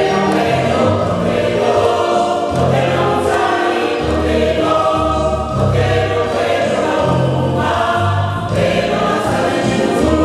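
Mixed choir of women's and men's voices singing a gospel song, with a deep bass line changing about once a second.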